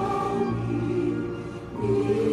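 Slow choral music with long held notes, a little softer just before the end.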